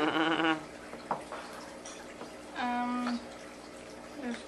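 Women laughing briefly at the start, then a short, steady-pitched voiced sound, like a held "ooh", about two and a half seconds in.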